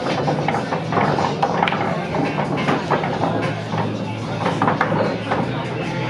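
Pool-hall background of many people's chatter with music playing, steady throughout, with scattered short clicks.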